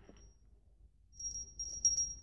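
A tiny handbell tinkling with a thin, high ring that starts about a second in and lasts about a second.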